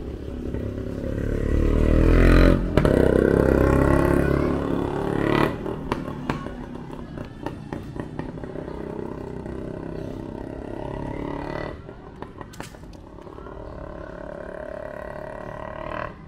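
A motor vehicle passing close by with a low engine rumble. It swells about two seconds in, is loudest for the next couple of seconds and fades by about five seconds, leaving a quieter street background.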